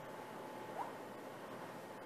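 Faint steady room noise and recording hiss, with one slight brief sound just under a second in.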